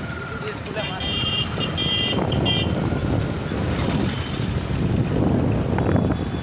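Rushing wind buffeting the microphone and road noise from riding an electric scooter along a street, a steady rumble throughout. About a second in, a short high-pitched electronic tone sounds in broken pieces for roughly a second and a half.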